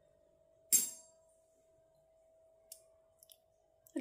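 One sharp click about a second in, followed by a couple of faint ticks, over a faint steady hum.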